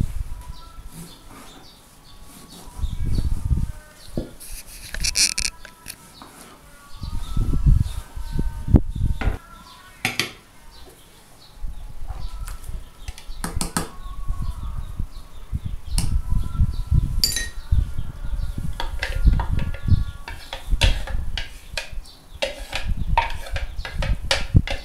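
Kitchen utensils clattering: a spoon knocking and scraping against a plastic chopper jug and a metal frying pan while tomato purée is emptied into the pan, with irregular clicks and handling bumps.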